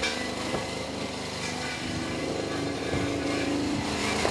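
A small engine hums steadily in the background and grows slightly louder. Over it come a few faint knocks as a car's driver door is handled and opened.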